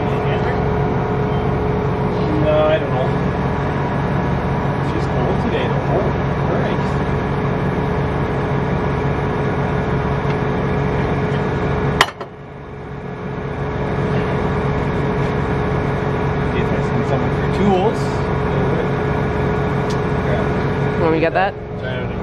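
Diesel engine of farm machinery idling steadily, a low even pulsing with a constant whine above it. The sound drops off sharply about halfway through and builds back up over a couple of seconds, with a few faint clicks over it.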